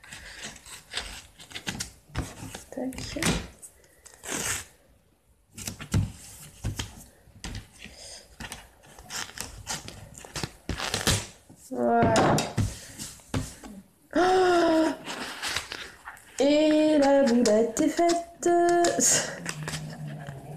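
Close handling of cardstock and a roll of tape on a table: scattered taps, rustles and light thumps. In the second half, a voice makes drawn-out pitched sounds that are not picked up as words.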